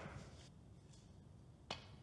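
Near silence, broken by one sharp, briefly ringing click about three-quarters of the way through: the click of a snooker ball being struck on the table.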